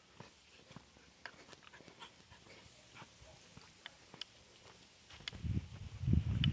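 Light, irregular ticks and scuffs of steps on a dirt road as a dog trots along. About five seconds in, a loud, low rumble on the microphone begins.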